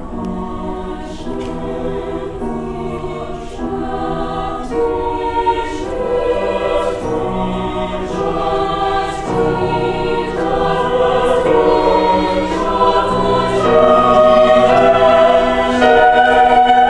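Mixed choir of men's and women's voices singing sustained chords that change every second or so, swelling steadily louder.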